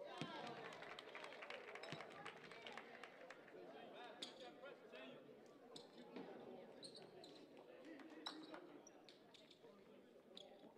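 Faint gymnasium sounds: a basketball bouncing on the hardwood court a few times, mostly in the first seconds, with scattered voices and short squeaks echoing in the hall.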